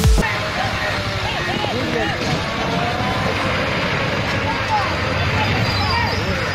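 Several people's voices overlapping and calling out over a steady roar of road and vehicle noise.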